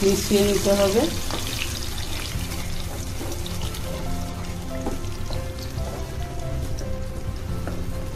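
Food frying in oil in a non-stick pan, stirred with a wooden spatula, under background music with held melody notes.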